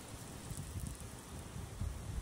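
Faint, steady hiss of a garden hose spraying water over a horse's head and body, with wind rumbling on the microphone.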